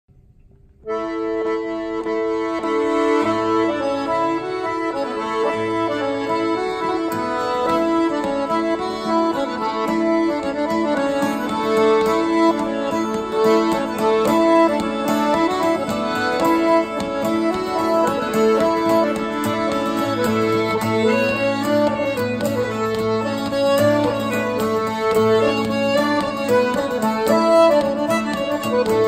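A traditional contra dance tune played by a trio of piano accordion, fiddle and acoustic guitar, starting about a second in. The accordion's sustained notes are the loudest part, with the fiddle and the strummed guitar under it.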